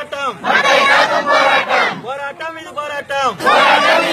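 A crowd of protesters shouting slogans in unison in call-and-response. A loud massed shout comes first, then a single voice calls the next line, and the crowd shouts back again near the end.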